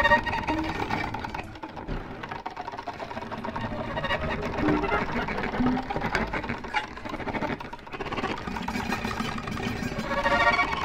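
Solo violin played through live electronic effects: a dense, layered improvised texture of processed bowed notes with a rapid fluttering pulse. A clearer pitched phrase sounds at the very start and another near the end.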